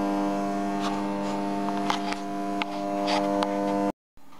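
Steady electrical mains hum: a stack of even, unchanging tones with a few faint clicks over it, cutting off suddenly just before the end.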